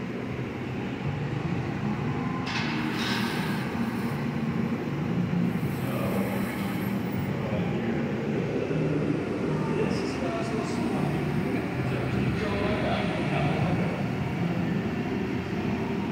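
Glassblowing studio's gas-fired glory hole and furnaces running with a steady noise, the burner flame close by as a piece is reheated.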